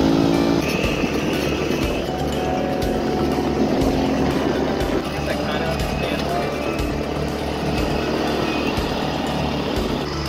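Small engines of a go-kart and an E-Ton mini ATV running as they are ridden, with background music over them.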